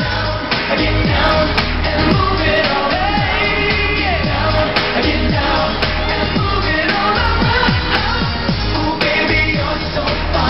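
Pop song: a male vocal group singing over a programmed beat, with a low kick drum thumping about twice a second.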